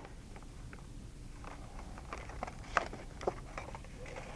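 Faint handling of a clear plastic clamshell pack as a circuit board and a printed card are taken out: a few light plastic clicks and crinkles, mostly in the second half.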